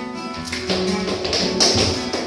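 Flamenco guitar playing with palmas, rhythmic hand-clapping by several people. The clapping thins out briefly and then comes back strongly about half a second in.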